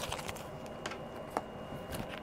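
A deck of tarot cards being handled, about five light, irregular clicks and taps of the cards against each other and the table.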